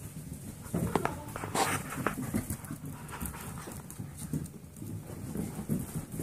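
A golden retriever mix puppy romping and running, its paws thumping and scrabbling in quick, irregular knocks on a mattress and then on the floor.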